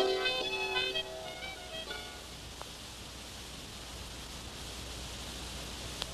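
A few plucked string notes of a folk-style tune ring out and fade over the first two seconds, leaving a steady tape hiss.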